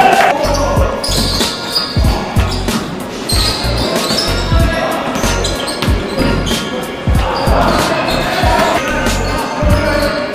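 Basketball bouncing on a wooden gym floor, with low thuds about every half second, and sneakers squeaking on the boards.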